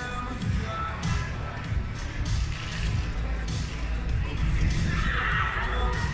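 Wind rumbling on the microphone over faint stadium music. About five seconds in, a hammer thrower lets out a sharp yell as she releases the hammer.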